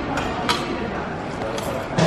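Banana vending machine's lift mechanism lowering a banana to the delivery tray, with two short clicks, one about half a second in and one near the end, over faint background voices.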